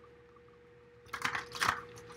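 A deck of cards being handled or shuffled: a quick run of crisp papery rustles and clicks starting about a second in. Before it, a faint steady hum in an otherwise quiet room.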